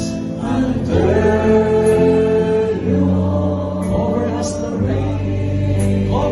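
Live worship band playing a slow praise song, two women singing the melody into microphones over keyboard and electric guitar, with long held notes.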